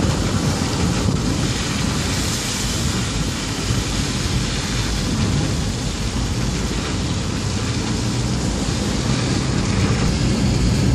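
Steady rushing noise of a car on the move, heard from inside: road and engine rumble with wind noise, unbroken and even throughout.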